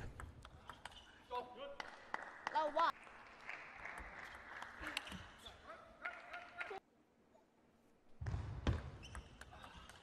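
Table tennis rally: the plastic ball clicking off the bats and the table in quick succession. The clicks stop about two-thirds of the way through and start again, with a new rally, about a second and a half later.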